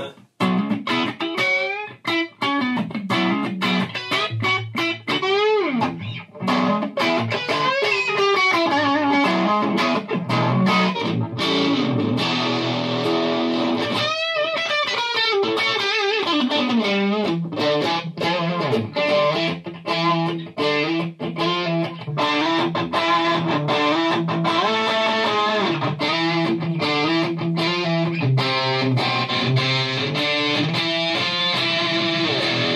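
Electric guitar played through the Fender-style amp models of a Zoom MS-50G multi-effects pedal, a run of picked notes and chords with a brief break in the playing about halfway through.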